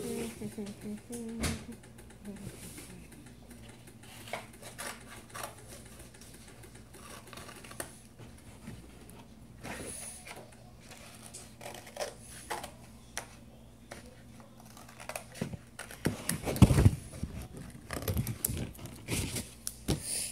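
Sticky tape being pulled and pressed onto cardboard by hand: scattered, irregular clicks, crackles and rustles, busier and louder near the end.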